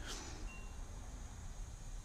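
Quiet room tone: a faint steady hiss and low hum, with a brief faint high-pitched tone about half a second in.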